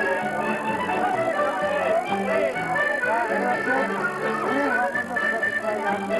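A live band playing lively dance music, loud and steady, with a crowd talking over it.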